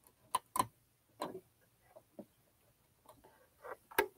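A few separate clicks and short mechanical knocks at uneven intervals from a sewing machine and the fabric being handled at it, with no steady motor run.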